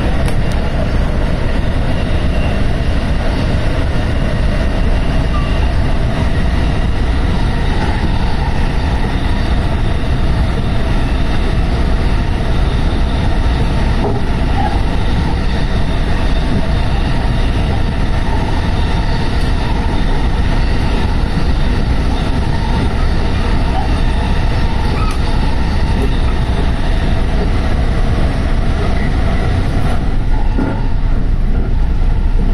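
JR West 223 series 2000 electric train running at speed through a tunnel, heard from just behind the driver's cab: a loud, steady rumble of wheels on rail with faint steady tones above it.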